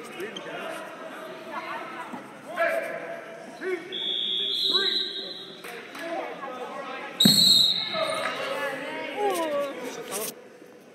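Coaches and spectators shouting in a gym hall during a wrestling bout, with a high whistle-like tone in the middle. About seven seconds in comes the loudest sound: a thump and a sharp, shrill referee's whistle blast, signalling the pin.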